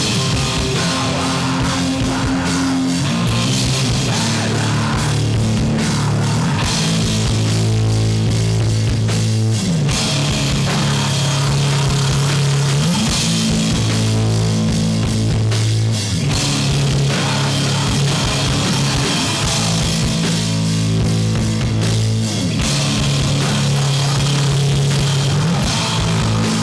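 Live sludge metal played on distorted electric guitars and a drum kit, loud and steady, with no vocals. The guitars hold long, low notes and slide between them a few times.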